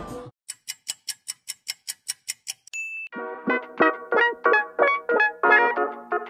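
An edited-in ticking sound effect, about five light ticks a second for two seconds, ending in a short ding, after which light background music with keyboard-like notes begins.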